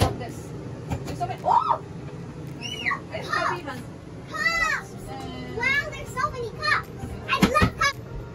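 Young children's high-pitched voices calling out and exclaiming in short bursts, with a sharp knock at the start and another thump near the end.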